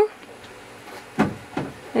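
Quiet room tone in a pause between speech, with two short, faint vocal sounds just past the middle.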